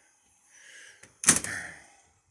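A soft rustle, then a single sharp knock about a second in, with a short fading tail.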